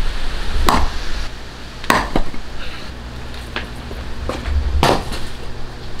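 Sharp knocks, about five at irregular intervals, of a piece of reef aquarium rock being struck to split it into shelf rocks; it does not break.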